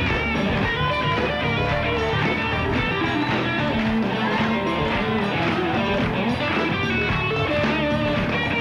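Band music with guitar to the fore, played continuously.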